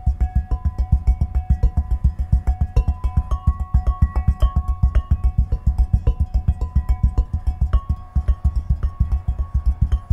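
Beer glasses holding different levels of water, hand-drummed in a fast rhythm: a quick, even run of low thumps, about eight a second, with ringing glass tones at a few different pitches on top.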